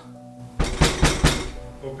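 Hard knocking on a front door: a quick run of about five loud knocks starting about half a second in. A shout of "Open" follows near the end.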